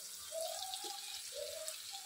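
Faint steady sizzling of sliced shallots and green chillies frying in oil in a pot.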